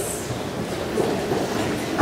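A congregation rising to its feet: a diffuse shuffling and rustling of people standing up and opening hymnals, with a few faint knocks.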